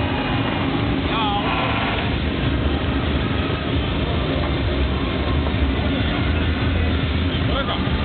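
Loud, continuous din of motorcycle engines running at high revs for a burnout, mixed with a crowd's shouting voices.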